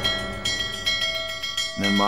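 Dinner bell ringing, struck rapidly and repeatedly with a bright metallic ring. A narrator's voice comes in near the end.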